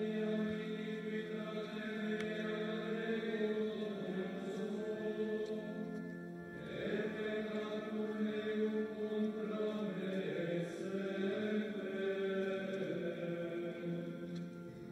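A group of men chanting slowly together, long held notes of liturgical plainchant, with a new phrase starting about halfway through.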